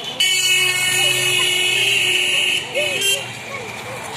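A loud vehicle horn: one long blast of about two and a half seconds starting just after the start, then a short second toot.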